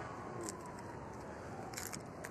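Steady background hum of street ambience with a few small, sharp clicks, about half a second in and again near the end.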